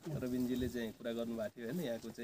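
A man speaking Nepali in a steady flow of talk, with short pauses.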